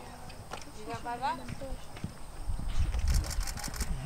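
Hoofbeats of a horse cantering on a sand arena, getting louder near the end as it comes close. About a second in, a short voice call rises in pitch.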